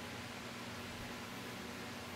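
Quiet, steady background hiss with a faint low hum: room tone.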